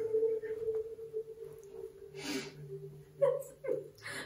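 A woman's stifled laughter: a breathy laugh about two seconds in and short giggles near the end, over a steady background tone that fades out in the first two seconds.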